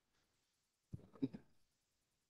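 A pause in speech: near silence, broken about a second in by a brief, faint murmur of a man's voice, a hesitation sound.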